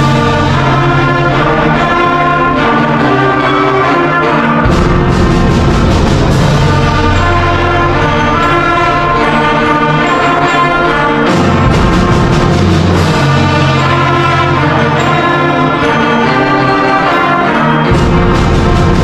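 School concert band playing loud, full-ensemble music with prominent brass, long sustained low notes and a few sharp percussive hits.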